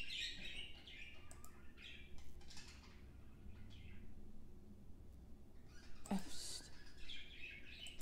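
Faint bird chirps over a low steady hum.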